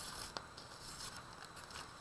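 Faint rustling of a folded paper doily being handled, with one light click about a third of a second in.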